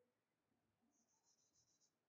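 Very faint chalk writing on a blackboard, near silence: light scratches, then a quick run of about six small high ticks about a second in.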